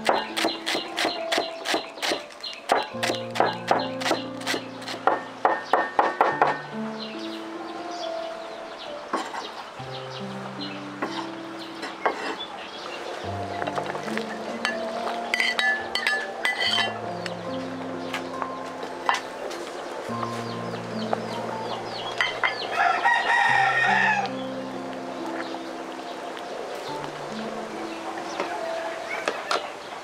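A cleaver chopping green onions and culantro on a wooden chopping block, quick repeated chops for about the first six seconds, over background music with a slow stepping bass line. A rooster crows twice, near the middle and again about two thirds of the way through.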